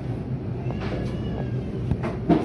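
Supermarket ambience: a steady low hum with a brief, faint high-pitched squeal about a second in.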